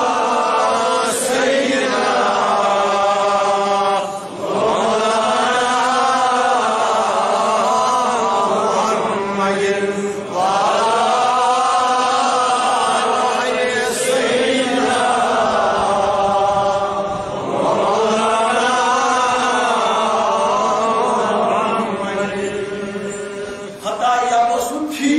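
Melodic chanted recitation by voice, sung in long held phrases a few seconds each, with short breaths between phrases about four, ten, fourteen and seventeen seconds in.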